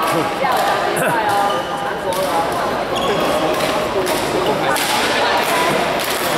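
Badminton rackets hitting shuttlecocks: several sharp strikes at irregular intervals, over voices chattering in a large hall.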